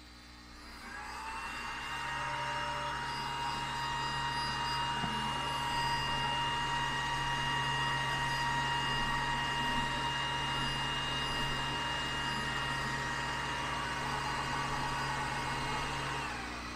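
xTool D1 Pro laser engraver running an engraving job with its air assist on: a steady whine with a low hum. It builds up over the first second or two, holds steady, and starts to wind down right at the end.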